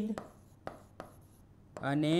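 Pen writing on a board surface: a few short, sharp taps and scratches as a word is written by hand.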